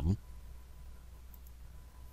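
A few faint computer mouse clicks in the second half, over a low steady hum and a faint thin tone; a spoken word trails off at the very start.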